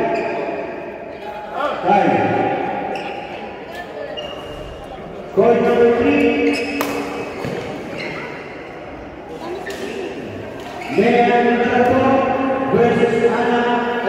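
Badminton rally: several sharp knocks of racket strings hitting the shuttlecock and footfalls on the court floor, echoing in a large hall, heard under voices.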